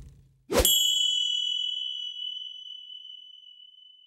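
A logo-reveal sound-effect sting: a sharp hit about half a second in that rings out as a single bright, bell-like ding, fading slowly over about three seconds.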